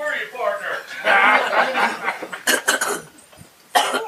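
People talking and chuckling, with a few sharp bursts in the second half and a sudden loud one near the end.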